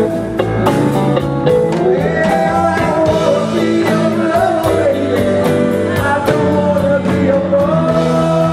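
Live rock band playing a slow blues-rock number: electric guitars, drum kit and keyboards, with a lead line bending in pitch over the band.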